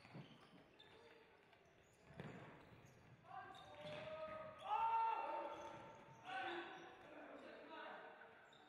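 Shouting voices in a sports hall during a futsal match. They rise about three seconds in and are loudest around five seconds, with another burst a little later. Earlier come a few thuds of the ball.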